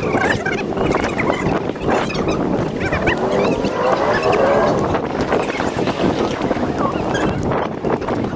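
Wind rumbling on a body-worn camera's microphone over outdoor street noise, with short squeaky chirps thickest around the middle.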